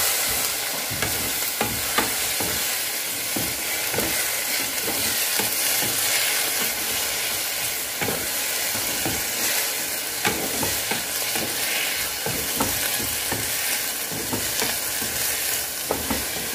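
Cabbage, carrots and green beans sizzling in a frying pan as a splash of added water boils off, stirred with a wooden spatula that knocks and scrapes against the pan again and again.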